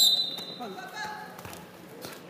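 Wrestlers scuffling and thudding on a gym mat, with faint voices in the background. It opens with a brief, sharp, high-pitched squeak, the loudest sound here, followed by a few dull knocks.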